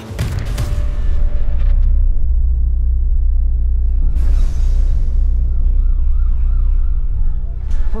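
Trailer sound design: a sharp hit at the start, then a loud, deep bass rumble that holds steady, with a faint wavering siren-like tone in the middle.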